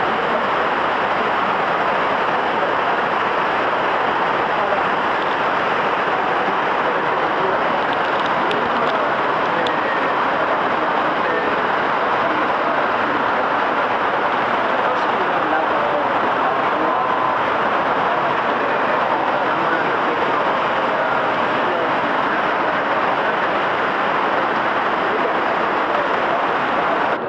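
Steady rushing of an underground stream, an unbroken noise echoing through the cave.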